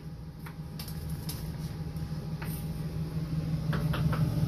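A few light knife taps on a cutting board over a steady low hum that grows slightly louder.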